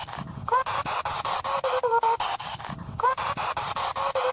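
Spirit box radio scanner sweeping through stations: choppy bursts of static about eight a second, with brief snatches of a high pitched voice or tone, which the on-screen caption labels a child singing.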